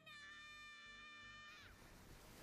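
Faint anime soundtrack: a high, child-like voice holding one long drawn-out shout that stops about one and a half seconds in, followed by a faint rushing noise.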